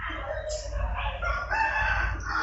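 A drawn-out, high-pitched animal call lasting about a second and a half, starting about half a second in.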